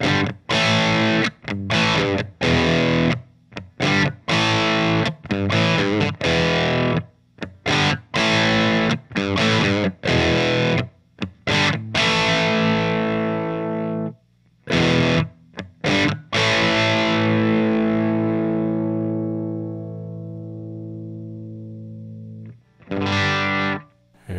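Electric guitar played through a guitar amplifier and picked up by a Shure dynamic microphone close against the speaker grille. It plays a run of short, chopped chords with brief gaps between them, then lets one chord ring and die away over about six seconds, with one more short chord near the end.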